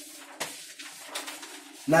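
Low bird cooing, like a dove's, running under a few soft clicks.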